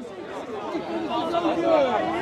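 Speech: voices talking, softer than the louder speech just before and after.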